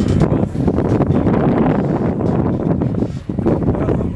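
Wind buffeting an outdoor microphone: a loud, uneven rumble.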